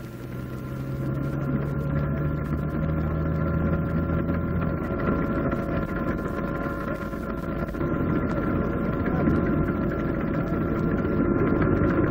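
Aircraft engine droning steadily with a high whine, fading in over the first two seconds and then holding level.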